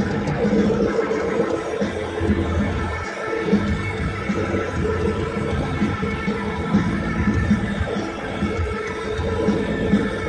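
Live rock band holding sustained electric guitar chords in the long closing stretch of a song, played loud in a large arena.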